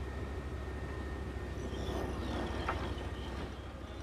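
Steady low mechanical rumble with no clear rhythm or change in pitch.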